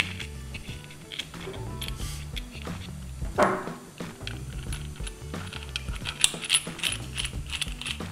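Small metal clicks and clinks as a nut is threaded onto a lock cylinder and a 19 mm socket is fitted over it, with a louder clink about three and a half seconds in. Background music plays under it.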